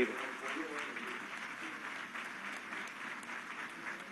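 An audience applauding: many hands clapping at a steady level.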